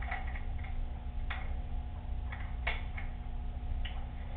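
Scattered light clicks and taps, about seven in four seconds, from a person handling a parcel and the hardware of a glass door, over a steady low hum.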